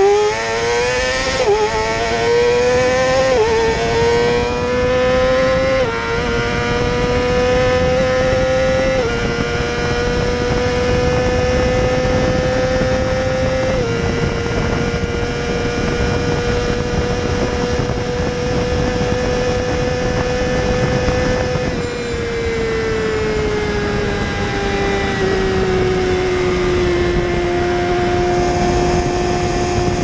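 2019 Yamaha R6's 599 cc inline-four at full throttle, its pitch climbing and dropping sharply at quick upshifts about 1.5, 3.5, 6 and 9 seconds in. It then holds a high, nearly steady note near top speed. From about 22 seconds in the pitch falls as the throttle is eased, and it settles at a lower steady note, with wind rush throughout.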